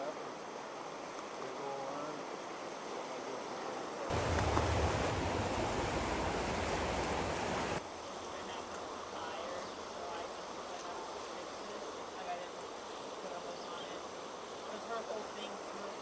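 Steady rush of river water flowing below a spillway, with a louder, deeper rush of noise for a few seconds starting about four seconds in and cutting off suddenly.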